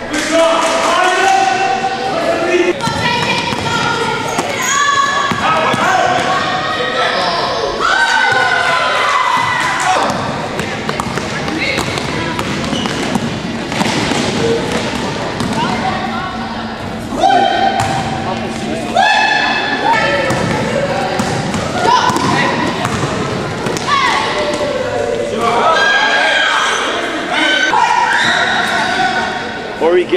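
Basketball game sounds in a large gym: a ball bouncing on the hardwood floor with repeated thuds, amid players and spectators calling out and shouting.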